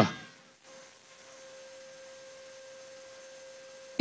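A faint, steady hum-like tone at one pitch, with fainter higher overtones over a low hiss. It begins about half a second in and holds unchanged until the end.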